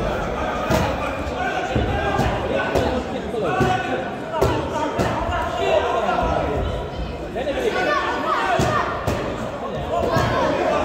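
Spectators' voices calling out ringside during an amateur boxing bout, echoing in a large hall, with several thuds from the ring.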